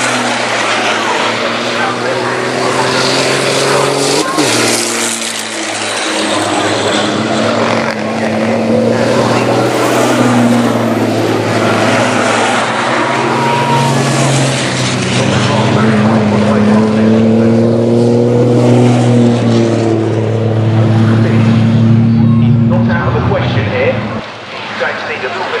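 Racing trucks' diesel engines running at speed along the circuit, their notes rising and falling as they accelerate and pass.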